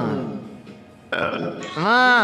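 A singing voice: a held note fades out, a short rough vocal sound breaks in about halfway through, and a new sung note starts near the end.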